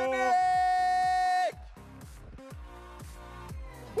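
A man's long held shout of an athlete's name over a PA, ending about a second and a half in, then background electronic music with a steady beat.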